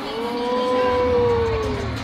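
One voice holding a single long 'oooh' for nearly two seconds, sliding down in pitch as it ends, over the arena sound. A low music beat comes in partway through.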